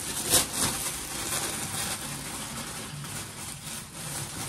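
Tissue paper and paper wrapping rustling and crinkling as a tissue-wrapped bundle of folded sweaters is lifted and wrapped, with a louder crinkle about a third of a second in.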